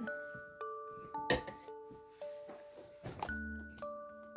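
Background music: a melody of bell-like mallet notes over a low bass line. A sharp click comes about a second in, with a few softer clicks near three seconds.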